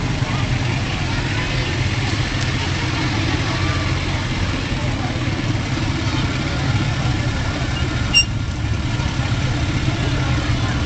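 Engines of a line of ATVs running steadily at low speed as they roll past, a continuous low rumble. A short high beep cuts in once about eight seconds in.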